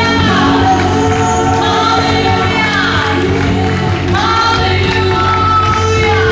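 A live gospel worship band playing, with electric guitar and keyboard under a lead singer and a group of voices singing together, at a steady loud level.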